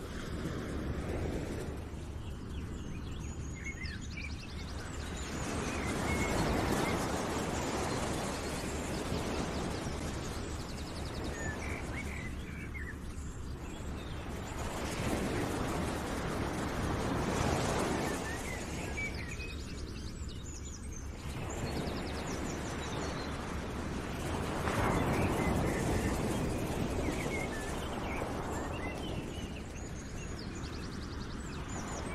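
Outdoor nature ambience: a steady rushing noise that swells and fades every several seconds, with faint bird chirps scattered through.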